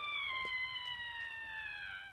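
A long, high-pitched scream of "ahhh", held on nearly one pitch and sagging slowly lower before it stops near the end.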